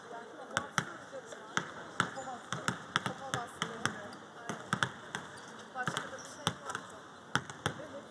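Basketballs bouncing on a court floor: many sharp, irregular bounces, several a second and overlapping, as players dribble during practice, with voices faint behind them.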